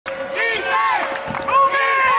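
Basketball shoes squeaking on a hardwood court in short chirps that rise and fall in pitch, several in two seconds, with the ball being dribbled.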